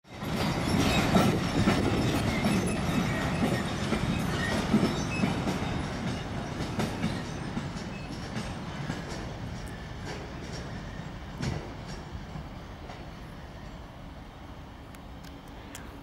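A train passing on the tracks, loud at first and fading steadily as it moves away, with scattered clicks from the wheels on the rails.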